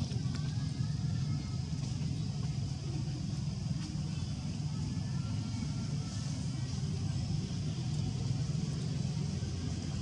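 A steady low rumble of background noise, with faint distant voices above it.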